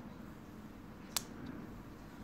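Faint handling of a smartphone while a protective plastic sticker film is peeled off it, with one sharp click a little past the middle.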